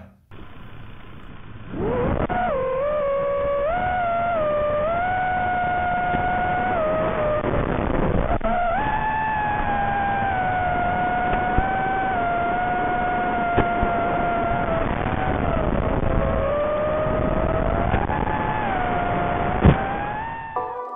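Brushless motors of an FPV quadcopter whining in flight, heard through the video transmitter's onboard microphone over a hissy, narrow-band analog link. The pitch of the whine rises and falls with the throttle. It comes in about two seconds in; before that there is only hiss.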